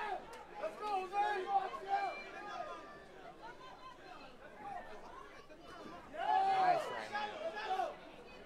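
Men's voices talking and calling out over crowd chatter, with a quieter stretch in the middle and a louder burst of voice about six seconds in.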